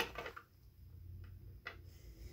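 Quiet low room hum with two faint clicks, one about a second in and one near the end, from handling the phone or the toy figures.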